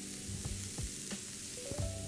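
Diced onion, carrot, celeriac and garlic sizzling steadily in olive oil in a frying pan as they sweat, with background music.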